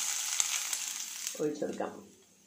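Hot oil tempering of mustard seeds, dried red chillies and curry leaves sizzling as it is poured onto beetroot pachadi, with a few sharp pops in the hiss; the sizzle dies away near the end.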